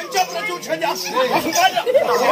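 Speech: a voice speaking, with chatter behind it.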